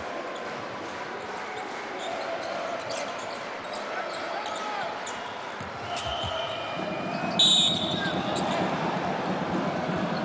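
Basketball arena crowd noise with a ball being dribbled on the hardwood court. A referee's whistle blows once, short and sharp, about seven and a half seconds in, stopping play, and the crowd noise swells after it.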